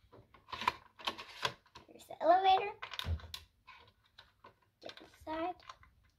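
Small plastic toy figures and accessories clicking and tapping against a plastic dollhouse as they are handled, in a quick run of short sharp clicks. A child's voice is heard briefly twice, without clear words.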